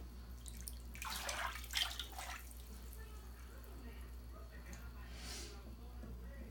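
Bath water sloshing in a tub in a few short swishes about a second in, and once more faintly near the end, over a low steady hum.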